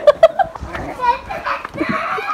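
Children playing: a run of quick, high-pitched laughter that trails off about half a second in, followed by scattered children's voices.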